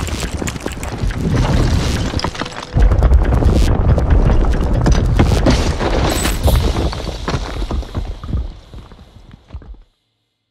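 Explosive demolition of the Supertech twin towers, two concrete high-rises: a dense crackle of charges firing in quick sequence, then a heavy rumble of the collapse coming in suddenly about three seconds in. The rumble dies away over the following seconds and cuts off just before the end.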